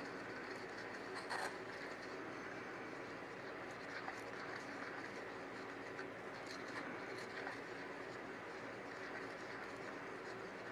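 A wooden stir stick stirring resin and glitter in a small cup, with a few faint scrapes and taps against the cup's side, over a steady background hiss.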